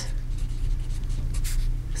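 Felt tip of a retractable permanent marker writing words on paper: a run of short, irregular scratchy strokes, over a steady low hum.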